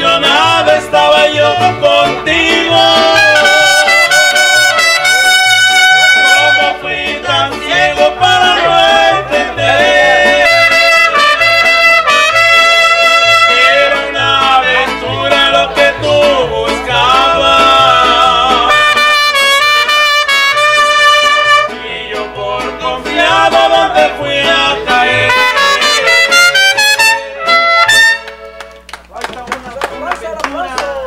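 Live mariachi band playing: trumpets carry the melody over strummed guitars and vihuela, violin and accordion, with a bass line pulsing on a steady beat. The piece stops near the end.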